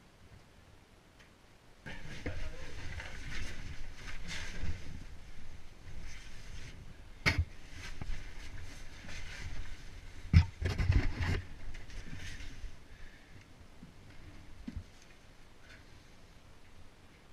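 A caver crawling through a low rock passage: clothing and gloves scraping and rustling against rock and a muddy floor, starting about two seconds in, with several sharp knocks of gear against the rock, the loudest a little past the middle, before it quietens near the end.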